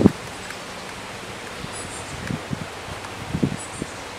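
A sharp knock right at the start, then a few softer knocks as a wooden frame is worked loose and lifted out of a wooden nuc box. Under it, a steady outdoor rustle of leaves in the wind, with faint high bird chirps.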